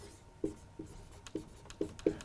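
Dry-erase marker squeaking on a whiteboard as a word is written: about five short strokes, roughly two a second.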